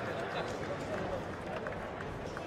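Indistinct crowd chatter echoing in a large hall, with a few scattered small knocks.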